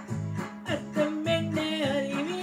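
A woman singing a Tamil love song, her voice wavering in pitch on held notes, over electronic keyboard accompaniment with a steady, repeating bass pattern and a plucked, guitar-like voice.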